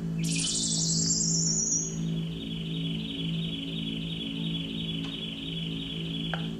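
Live band's eerie instrumental passage: a low sustained drone note swelling and fading in a slow pulse. Over it, a high electronic sweep falls at the start, then settles into a steady, fluttering high chirp like birds or crickets.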